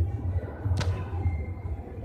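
A low steady hum with a single sharp click a little under a second in.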